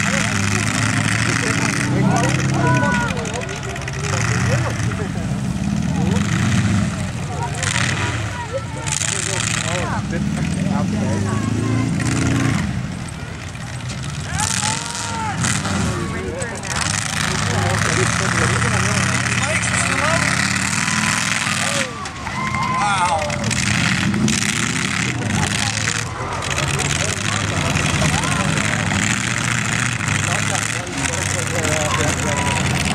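Several demolition derby cars' engines running and revving hard together, broken by sudden crashes as the cars ram each other, with voices from the crowd over it all.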